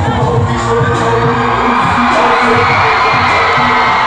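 Dance music played over loudspeakers, with a large crowd cheering and shouting along; the crowd noise swells about halfway through.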